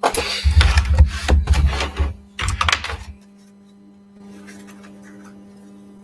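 Tarot cards being shuffled and handled close to the microphone: about three seconds of rapid papery rattling with dull knocks, then it stops.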